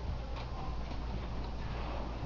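Auditorium room noise: a steady low rumble with a few faint clicks.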